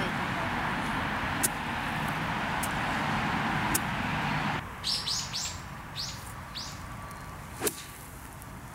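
A steady rushing background drops away suddenly about halfway. Birds then chirp in a run of short high calls, and near the end an iron strikes a golf ball once, sharply, on a controlled approach shot.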